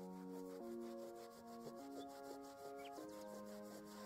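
A cloth being rubbed back and forth on carpet pile, a quick run of short scrubbing strokes that stops about three seconds in, over soft background music with held chords.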